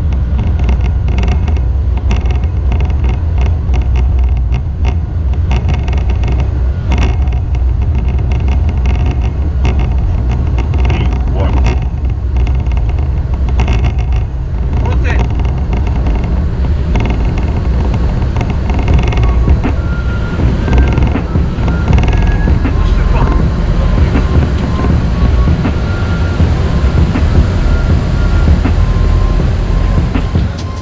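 Airliner cockpit noise during the takeoff roll and climb-out: a loud, steady low rumble of engines and runway, with frequent knocks and rattles from the wheels over the runway in the first half that thin out after about fifteen seconds as the aircraft lifts off.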